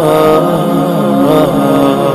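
Melodic vocal chanting in long held notes that waver slightly and shift in pitch, a devotional chant played as the sermon's outro.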